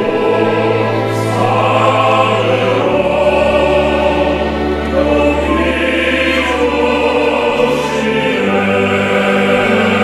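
Male choir singing a slow arrangement in sustained chords, accompanied by a string ensemble, with held low bass notes changing every few seconds.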